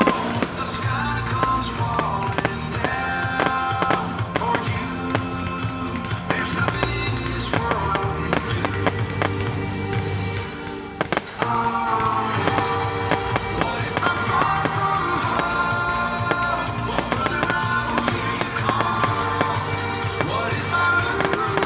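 Music playing throughout, with firework bangs and crackling from aerial shells and crackle effects mixed in; the music dips briefly about eleven seconds in.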